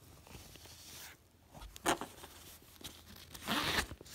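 Backpack zipper being pulled, a short rasp about three and a half seconds in, after a sharp click just before the two-second mark.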